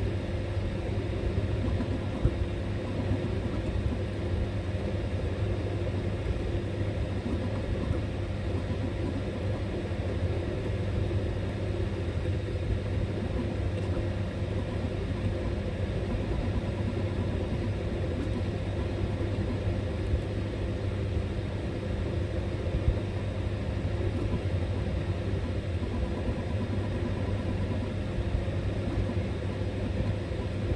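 Creality Ender 3 V2 3D printer printing at high speed under Klipper: its stepper motors and cooling fans run steadily, with quick small fluctuations as the print head darts about.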